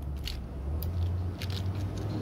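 A few faint clicks and crackles from jelly beans and their plastic packaging, over a low steady rumble.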